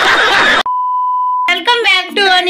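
A short burst of loud hissy noise, then a steady single-pitched electronic beep lasting under a second, a bleep sound effect laid in during editing; speech starts again near the end.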